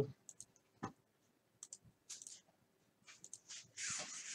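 Faint, scattered clicks and small handling noises at a desk, then a short crinkle of plastic near the end as a bagged wax pack is handled.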